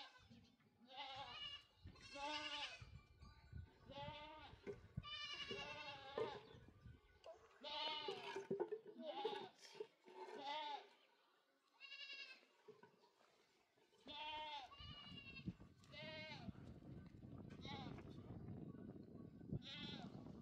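Goats bleating over and over: a string of wavering calls, each under a second long, with short gaps between them. A low, steady rumbling noise runs under the last few seconds.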